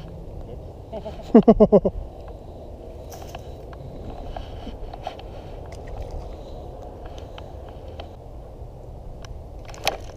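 Steady low rumbling noise, with a short burst of a man's voice in quick pulses about a second and a half in and a few faint ticks.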